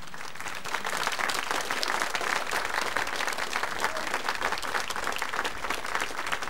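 Audience applauding at the end of a song, the clapping building up over the first second and then holding steady.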